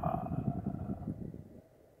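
Faint low background rumble with a lingering hum from the tail of a voice, fading out and cutting to dead silence shortly before the end.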